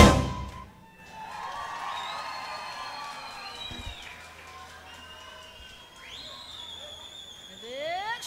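A live band's final chord of a Gypsy dance number cutting off within the first second. A quieter stretch of voices in the hall follows, with a few faint long high tones.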